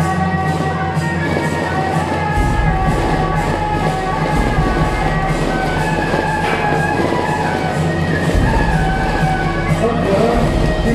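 Music playing steadily, with held melody notes and a deep bass line that comes in a couple of seconds in and changes pitch a few times.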